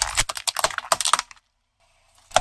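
Car tyre rolling over small coloured plastic tubes, crushing them in a quick run of sharp cracks and crunches that stops abruptly about a second and a half in.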